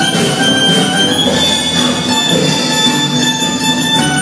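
Live band playing on drums and an electric bass-type instrument, with a long, steady, piercing high tone held over the music, sounding like a squeal.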